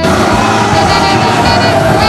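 A loud, sustained horn-like tone that falls slightly in pitch, over a dense noisy din.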